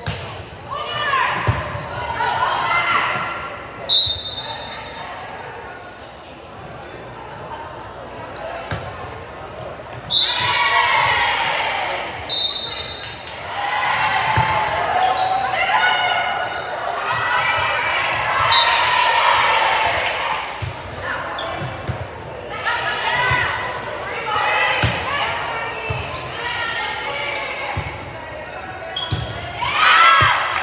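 Indoor volleyball match: the ball being struck and bouncing, voices shouting and cheering, and several short, high referee whistle blasts, all echoing in a large gym.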